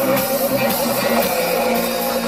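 Live synth-pop band playing loudly, recorded from within the concert audience: drums, guitar and keyboards, with a held note wavering in pitch through the first second.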